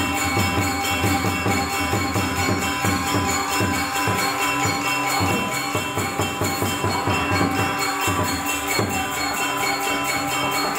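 Balinese gamelan playing live: bronze metallophones and gongs ringing in a fast, dense, even rhythm, with drum strokes underneath.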